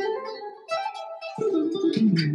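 Electric guitar, a Stratocaster on a clean sound, played legato with the fretting hand alone and no pick. It plays a short phrase of a few held notes that steps up in pitch and then falls away.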